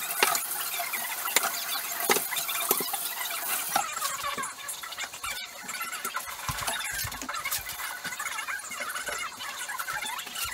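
Dishes being washed and handled by hand at a kitchen sink: repeated clinks and knocks of plates and utensils, with squeaks, over a steady hiss.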